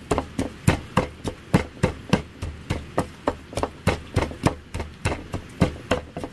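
Wooden pestle pounding roasted chilies, tomatoes and seeds in a bowl: steady, even strikes, about three a second.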